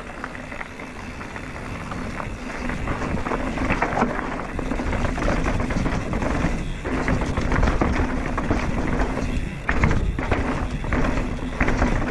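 Downhill mountain bike ridden fast over a rough dirt trail: tyres rolling and skidding on dirt and roots, with the chain and frame rattling and clattering over the bumps. The noise builds as speed picks up.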